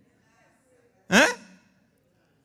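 A man's single short, breathy vocal exclamation, rising in pitch, about a second in after a pause.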